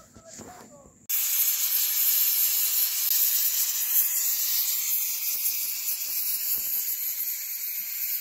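Pressure cooker on a wood fire venting steam: a loud, steady hiss that starts suddenly about a second in.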